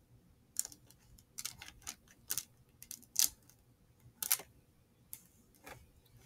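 Irregular small clicks and crackles from a honeycomb beeswax sheet being pinched and rolled tightly around a candle wick by hand, loudest around the middle.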